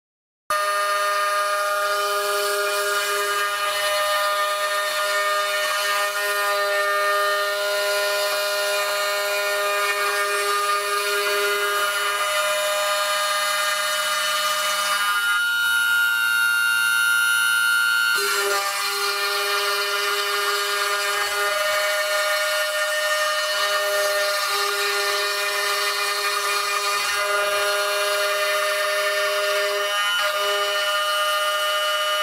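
CNC router spindle cutting a wooden blank, a loud steady whine made of several held tones that starts about half a second in. Partway through, for about three seconds, the tones shift to a higher single tone before the cutting sound returns.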